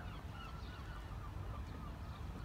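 Faint, short bird calls repeating over a low, steady rumble of wind and sea.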